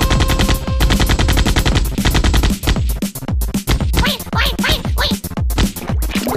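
Cartoon soundtrack with a fast rattling run of sharp percussive hits and low thumps, about ten a second, like rapid drumming. A held note sounds for the first second, and squeaky sliding chirps come in over the second half.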